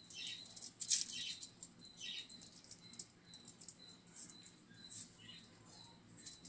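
Aluminium foil crinkling and rustling in irregular, quiet crackles as hands fold a chapati wrap on it.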